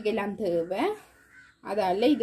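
A woman's voice speaking in short repeated phrases, with a brief pause in the middle.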